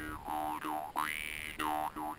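Dan moi, a Vietnamese brass jaw harp, being played. A steady twangy drone carries an overtone melody that swoops up and down several times as the player's mouth shape changes.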